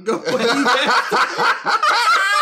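Two men laughing hard, a quick run of chuckles that starts abruptly and keeps going.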